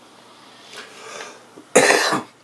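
A man coughs once near the end, loud and short, after a softer breathy rush about a second before.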